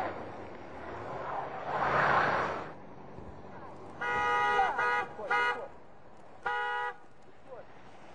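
A car horn honks three times from about four seconds in: a longer blast, then two short ones. Before that, a rushing vehicle noise swells and cuts off suddenly.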